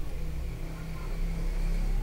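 A low, steady mechanical hum that grows a little louder about a second in.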